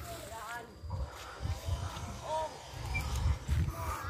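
Wind buffeting the microphone in uneven low gusts, with faint distant voices.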